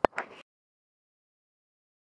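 A sharp click right at the start and a fainter one just after, then total silence from about half a second in: the sound track drops out at an edit between shots.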